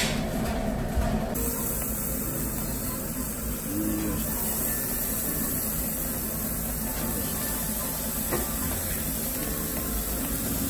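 Slices of beef sizzling on a tabletop gas yakiniku grill: a steady hiss that starts about a second in.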